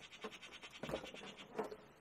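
Faint scraping and small knocks of a dash cam and its suction mount being handled and pressed into place at the bottom of a windscreen.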